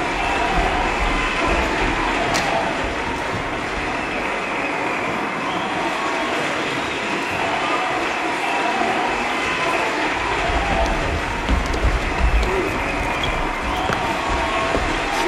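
Audience applauding steadily, an even clapping that holds at one level throughout.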